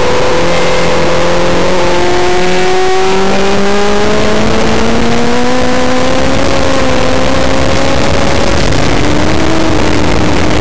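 Onboard sound of a land speed race car accelerating hard on the salt: the engine note climbs steadily and drops back sharply, as at gear changes, about two and three seconds in and again near the end, over heavy wind and rolling noise.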